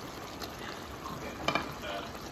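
Freshly added mushrooms and broccoli sizzling faintly in a pan of frying green curry paste, with a single short knock about one and a half seconds in.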